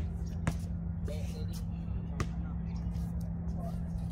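Basketball bouncing on a concrete court: two sharp bounces about a second and a half apart, over a steady low hum and faint voices.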